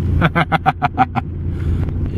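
A man's short laugh, about seven quick pulses in the first second or so, over the steady low drone inside a moving car.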